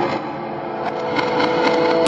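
Psytrance breakdown with the kick drum gone: held synth tones over a gritty, buzzing texture, slowly getting louder as the track builds.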